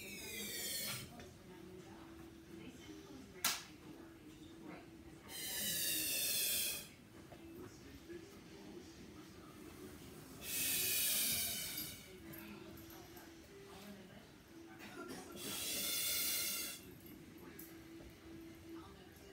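A Wubble Bubble ball being blown up by mouth: four long hissing breaths pushed into it, each about a second and a half, roughly five seconds apart. A single sharp click comes a few seconds in.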